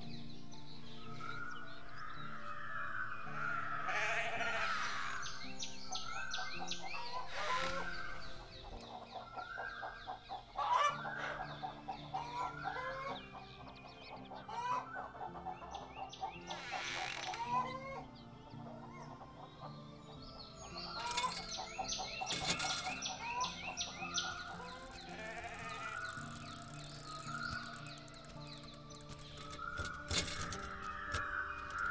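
Chickens clucking and calling repeatedly over background music with sustained notes.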